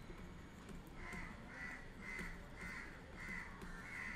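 A crow cawing faintly in the background, a run of about six short caws a little over half a second apart, starting about a second in.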